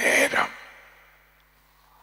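A man's voice through a headset microphone: a short stretch of speech in the first half-second, then the room falls quiet.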